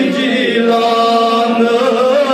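A man's voice singing a Kashmiri naat without instruments, drawing out long held notes that bend slowly in pitch.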